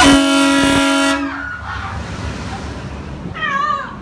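Dark-ride sound effect at an animatronic monster: a loud, steady, buzzy horn-like blast starting suddenly and lasting about a second, then near the end a short wavering, falling high-pitched call.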